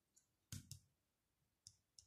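Near quiet broken by a few faint, sharp clicks, the loudest a quick double click about half a second in.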